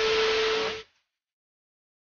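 A steady hiss with a single low steady hum in it, cut off abruptly just under a second in, followed by complete silence.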